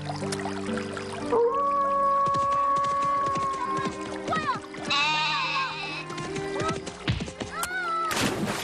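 A goat bleating several times, some calls long and quavering, over soft background music.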